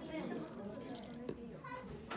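Indistinct chatter of several voices, children's voices among them, with a couple of light clicks in the second half.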